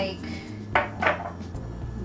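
Glass tumblers clinking as they are handled on a tiled countertop: two sharp clinks close together about a second in.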